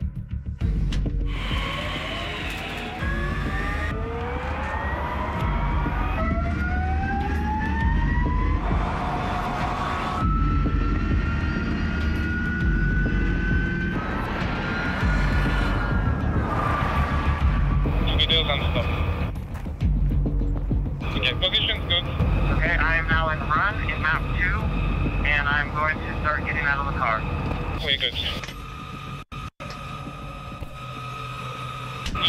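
Electric drivetrain of the NIO EP9 supercar whining as it accelerates, its pitch rising over several passes that break off abruptly one after another. A wavering high squeal comes about three quarters of the way through, and the sound drops to a quieter, steady tone near the end.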